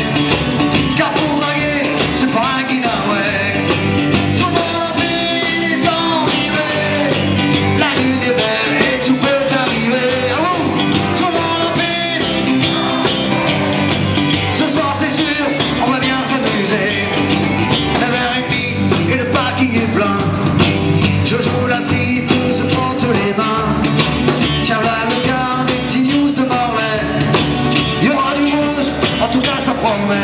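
Live rock band playing a Celtic-flavoured rock song, with electric bass, electric guitar, drums and fiddle.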